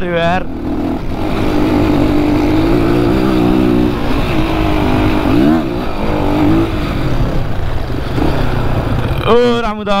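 Dirt bike engine running as the bike rides over a rough cobbled track, its revs rising and falling, with a quick dip and rise in pitch about halfway through.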